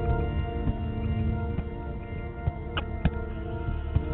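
Solo fretless electric guitar music, one guitar with no overdubs, making layered, sustained ambient tones. A few sharper picked notes stand out about three seconds in.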